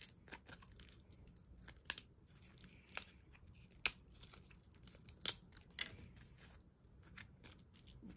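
Thin acrylic sheet snapping and crackling as hands break the waste away from cut acrylic blanks: about five sharp snaps a second or so apart, among fainter ticks and crinkles.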